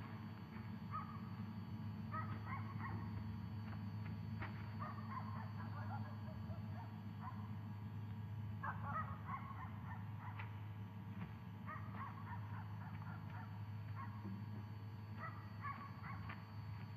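A dog barking in short bouts every few seconds over a steady low hum, with a couple of sharp clicks.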